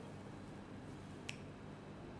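Quiet room tone with a faint steady hum, broken once a little past halfway by a single short, sharp click.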